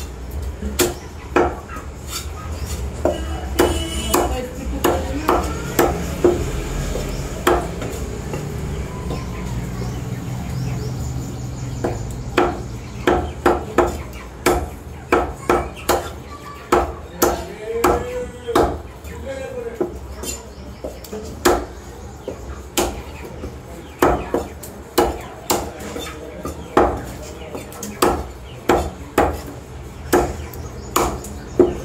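Butcher's cleaver chopping raw chicken on a wooden log chopping block: sharp thuds of the blade going through meat and bone into the wood. Scattered chops at first, then a steady run of roughly two chops a second through the second half.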